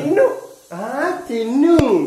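A drawn-out, dog-like whining yelp that rises and then falls in pitch, after a brief word of speech, with a sharp click near the end.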